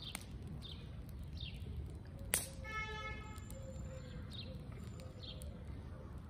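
A small bird calling repeatedly with short falling chirps, about three every two seconds, over a steady low rumble. A single sharp crack about two and a half seconds in is the loudest sound, followed by a brief pitched call.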